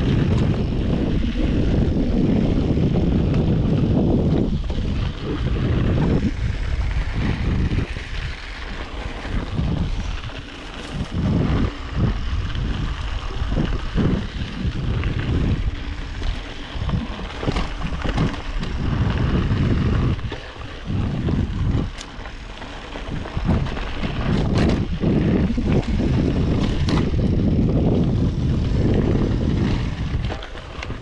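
Wind rushing over the microphone and tyre noise on a dry dirt trail as a Yeti SB5 mountain bike rolls along at speed, with short clicks and rattles from the bike over bumps. The rush falls off briefly twice, about a third of the way in and again about two thirds through.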